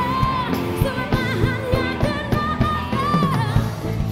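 Live pop-rock band with a steady drum beat backing a female lead singer, who holds long, gliding notes into a microphone.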